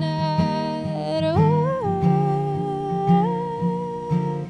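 A woman sings long, wordless held notes that slide up and down in pitch over a strummed acoustic guitar.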